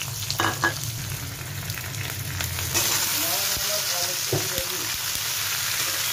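Sliced onions sizzling in hot oil in an aluminium kadhai, with a couple of spatula clinks early on. About three seconds in the sizzle turns louder and brighter as diced potatoes and green capsicum go into the hot pan.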